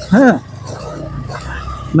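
A short voiced sound from the rider, pitch rising then falling, then steady low motorcycle riding noise: the engine running with wind on the microphone.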